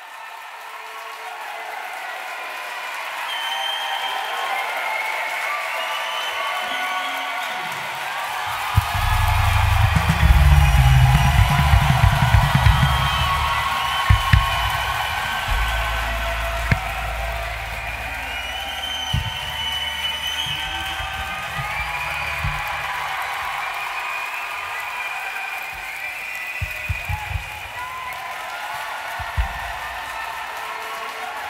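Concert crowd in a hall cheering, shouting and whistling as the sound fades in. From about eight seconds in, deep bass booms and drum thuds come from the stage, loudest for the next few seconds and then in scattered hits.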